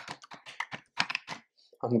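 Fast typing on a computer keyboard, a quick run of keystrokes at about ten a second that stops about one and a half seconds in.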